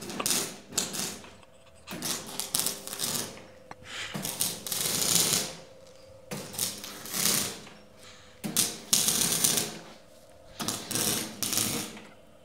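MIG welder arc crackling and spitting in about six short welding runs, each one to two seconds long with brief pauses between, using CO2 shielding gas.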